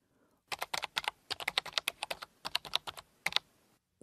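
Typing on a computer keyboard: quick key clicks in short uneven bursts, starting about half a second in and stopping shortly before the end.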